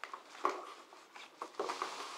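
Light rustling and handling noise with a few soft clicks, a clear knock about half a second in and a short hiss near the end.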